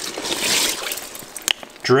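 A hand swishing through ice-water slush inside a soft-sided cooler, water splashing steadily, with one short click about a second and a half in.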